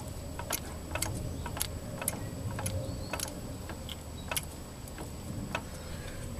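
Light, separate clicks about twice a second from a Dana 44 rear differential as the wheel is rocked back and forth. The loose spider gears knock at each change of direction, which the owner thinks is a shot bearing on the spider-gear pin.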